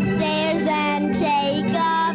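A young girl singing a held, wavering melody into a handheld microphone, over electric organ accompaniment holding steady chords.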